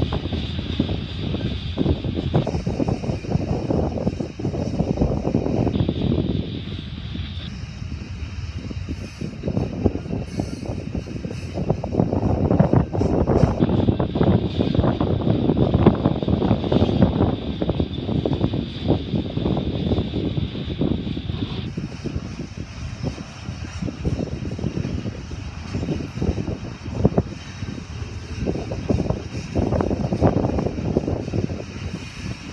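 Union Pacific mixed freight train of covered hoppers and tank cars rolling past: a steady rumble of steel wheels on rail, with frequent clicks and clacks.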